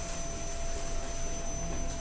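Mitsubishi passenger elevator car travelling down, a steady running hum with a faint thin whine held on a single pitch.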